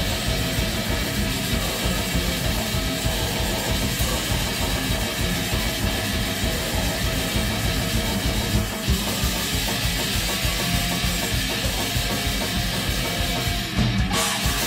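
Live heavy metal band playing: a drum kit with rapid, steady kick-drum strokes under electric guitar.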